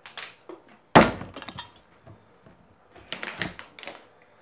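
A plastic water bottle tossed in a flip and striking the floor with a sharp, loud impact about a second in, with a short clatter after it. Further sharp knocks and handling noises of the bottle come near the end.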